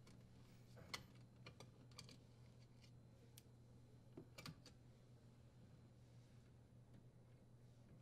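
Near silence with a faint low hum, broken by a few faint, scattered clicks of a screwdriver turning out a screw and a sheet-metal electrical cover being handled.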